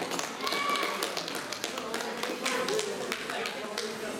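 Scattered hand claps from a few people among voices in a hall.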